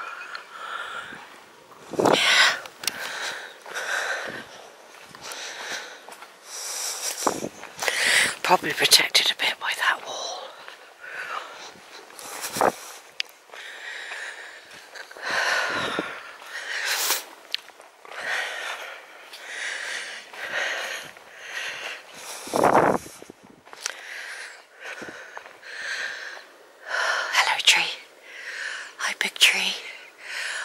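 A woman whispering in short breathy phrases, too quiet to make out words. A few sharp knocks come through it, with one heavier thump about two-thirds of the way through.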